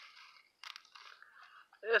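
Brief crunchy rustling close to the microphone, with a sharp crackle about half a second in: the sound of hands and a handheld camera being moved while a freshly picked mushroom is handled.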